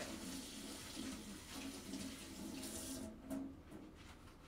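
Water running from a tap, shut off about three seconds in, followed by a few light clicks.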